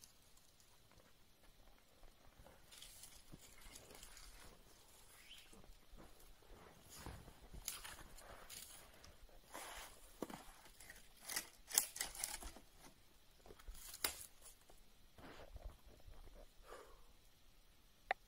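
Faint crunching and scraping of snowshoes in deep snow as a person climbs a snow-covered rock, with a cluster of louder crunches around the middle.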